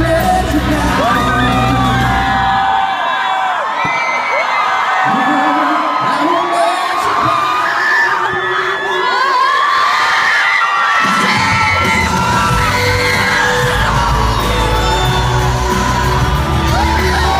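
Live pop concert in an arena heard from within the audience: fans screaming and cheering over the band's amplified music. The bass drops out about three seconds in and comes back about eleven seconds in, leaving the crowd's voices in front.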